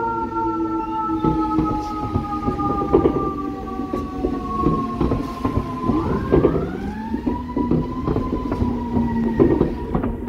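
Siren of FDNY Rescue 5's heavy rescue truck sounding on a response. Its pitch sinks slowly for about five seconds, then rises again about six seconds in and holds, over the rumble of the truck's engine.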